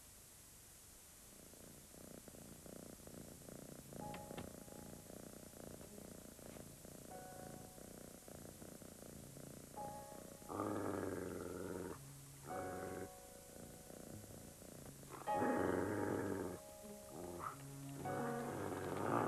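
Cartoon soundtrack: a low, fast-pulsing purr-like rattle builds from about a second in, joined by held musical notes. Three louder rough, rasping bursts come from about ten seconds in.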